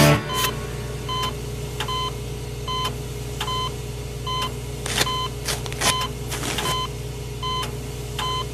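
A short electronic beep repeating about every 0.8 s over a steady low hum, with a few brief clicks and rustles around the middle.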